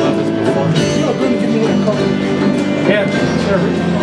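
Live acoustic band playing a song: strummed acoustic guitars with hand-drum strikes, and a voice singing over them.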